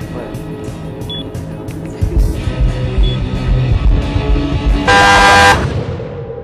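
Background music with a low rumble building under it, then a car horn blares loudly for about half a second near the end.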